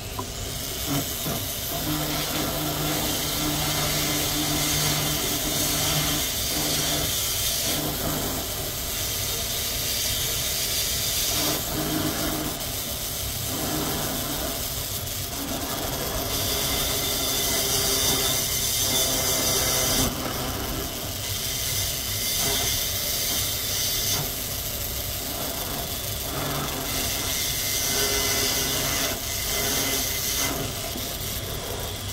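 Rotary carving handpiece with an inverted-cone bit grinding wet fire agate under a water drip: a steady hiss, with a low motor hum during the first several seconds.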